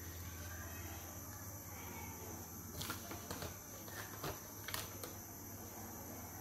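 Faint, scattered clicks of a metal spoon against a small china plate while custard powder is stirred into cold milk, over a steady faint high-pitched background whine and low hum.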